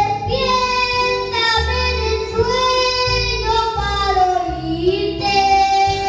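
A young boy singing a slow worship song into a microphone, holding long notes, over a musical accompaniment with low bass notes every second or so.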